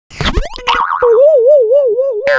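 Cartoon sound effects for an animated logo intro: a quick rising swoop with a few pops, then from about a second in a springy boing, one wobbling tone at about five wobbles a second.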